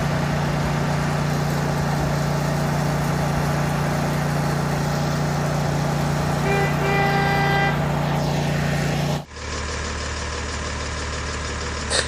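Steady engine idling hum, with a short pitched horn-like honk about six and a half seconds in. Just after nine seconds the sound cuts abruptly to a different, lower steady engine hum.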